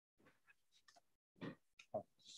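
Near silence: room tone with a few faint, brief noises, the strongest about one and a half seconds in and another just before the end.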